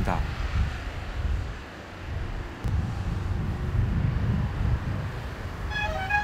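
Road traffic passing along a seafront road: a low rumble of car engines and tyres that dips briefly about two seconds in, then picks up again.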